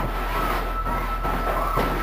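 A girl screaming: a loud, harsh, noisy scream held for about two seconds, with a thin steady high tone running underneath.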